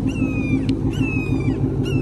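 Ford Mustang GT's 5.0 V8 idling steadily through a Corsa X-pipe with a muffler delete. Two high, gently falling whistle-like calls from an unseen source sound over it, with a short click between them.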